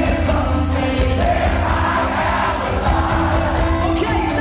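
Pop-punk band playing live, with electric guitar, violin, drums and a male lead vocal, heard loud and steady from within the crowd.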